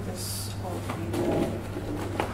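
Indistinct voices in the background over a steady low hum, with a short hiss just after the start.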